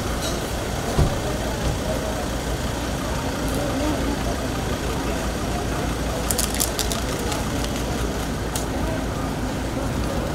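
A Ford SUV's engine idling with a steady low rumble, with a quick run of sharp clicks about six seconds in.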